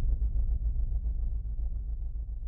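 Deep, low rumbling drone from a news channel's logo animation soundtrack, with a faint flutter over it, slowly easing off.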